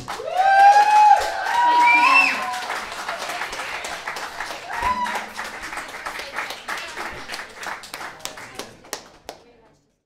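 Small audience clapping and cheering as a song ends, with loud rising whoops in the first two seconds and another shout about five seconds in. The clapping thins out and fades away near the end.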